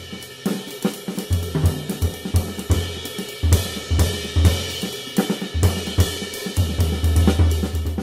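Drum kit played with sticks: cymbals ringing in a continuous wash over a busy pattern of snare, tom and bass drum strokes.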